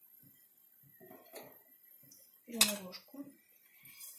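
A metal fork clinks against a frying pan a couple of times, the loudest clink about two and a half seconds in.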